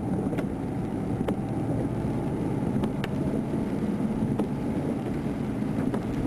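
A steady low rumble with a few faint clicks scattered through it.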